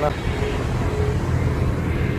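Steady low rumble of a tour bus driving along a highway, heard from inside the cabin.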